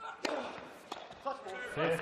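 Tennis serve struck with a sharp racket pop, a second sharp hit about two-thirds of a second later, then a man's voice calling out.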